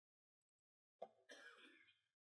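A single person's cough about a second in: a sudden start followed by a short noisy tail that fades within a second. The rest is near-silent room tone.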